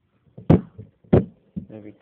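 Two sharp knocks or thumps on a hard surface, about two-thirds of a second apart, then a voice begins "There we go" near the end.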